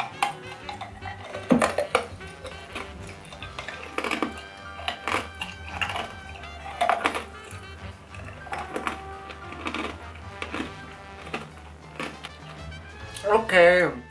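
Background music with a steady tone and bass, over which come irregular short crunches of ice being chewed slowly in the mouth, a bite every second or so.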